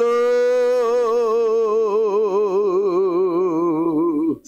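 A man's voice holding one long sung note into a microphone. The vibrato widens as the note goes on, and the pitch sags slightly near the end.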